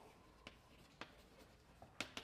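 Faint taps of chalk on a blackboard: a few scattered clicks over near silence.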